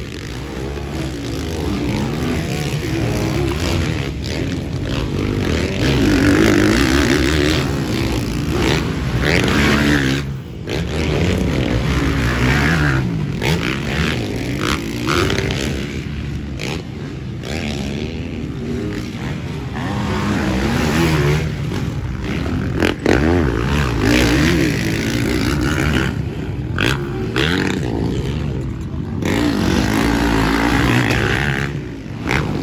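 Motocross dirt bike engines racing around a dirt track, revving up and down repeatedly as the bikes pass, with the overall loudness swelling and fading.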